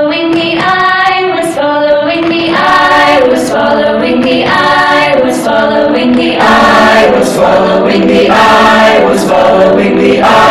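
A mixed choir of teenage boys and girls singing together, holding sung chords that shift every half second to a second.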